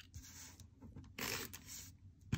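Double-sided adhesive tape runner drawn across paper: a short run of about half a second, a little over a second in, with a few faint clicks before it.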